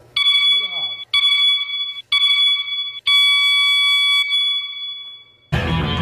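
Interval timer beeping: three short beeps about a second apart, then one long beep that fades, the countdown signalling the start of a Tabata work interval. Loud music comes in suddenly near the end.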